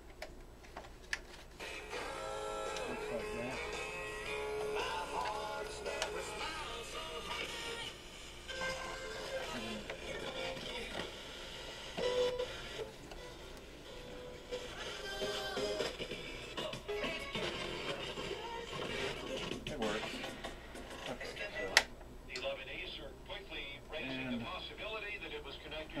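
Panasonic RX-FM14 boombox playing a music cassette with vocals through its small built-in speakers. A sharp click sounds about 22 seconds in.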